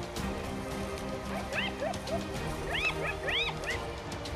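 Spotted hyenas giving a quick run of short, high-pitched rising-and-falling squeals in the second half, over steady background music.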